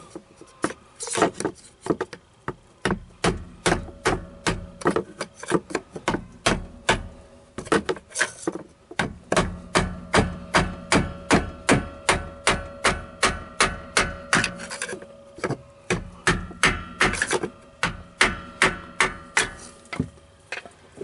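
Steady hammer blows, about two or three a second with a few short pauses, on a punctured oil filter to knock the over-tight factory-installed filter loose.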